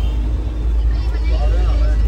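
Steady low engine and road rumble heard from inside a moving passenger vehicle, with faint voices of passengers talking about a second in.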